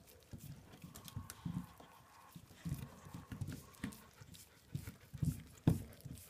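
Dog licking and gnawing at a frozen block of ice, with irregular low knocks and short clicks from its mouth and teeth on the ice. The loudest knocks come near the end.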